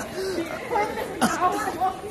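Several young voices chatting over one another, indistinctly.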